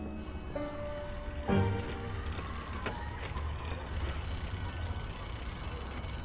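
Background music: a few pitched notes, then a steadier sustained passage.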